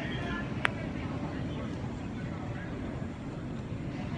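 Airport terminal crowd ambience: a steady low rumble with indistinct voices of people nearby, and one sharp click about half a second in.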